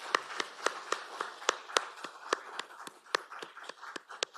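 Audience applauding: many scattered hand claps.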